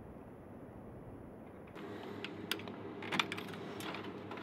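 A low steady rumble gives way, a little under halfway in, to a vending machine's hum. Several sharp metallic clicks follow as coins are fed into the machine's coin slot.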